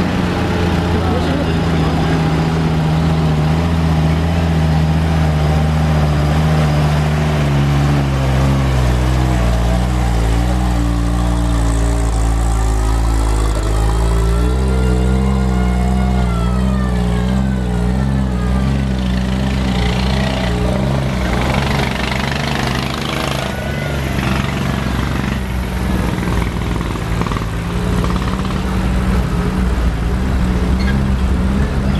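Engines of WWII-era military jeeps and trucks running at low speed as they drive past in a slow column, the engine note shifting as one vehicle follows another.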